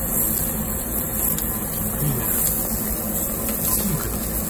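Steady hiss and rumble of a tabletop gas yakiniku grill: the burner flames under the slotted iron grate and thick-cut beef sizzling on it.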